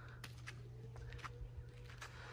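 Quiet background: a steady low hum, joined about half a second in by a faint steady tone, with a few soft clicks.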